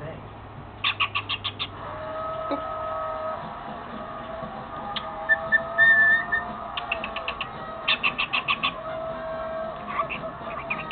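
Cockatiel chattering and whistling with its head inside a cardboard toilet paper roll. A run of quick clicking chirps comes about a second in and another near the end, with a short high whistle about halfway through, the loudest sound.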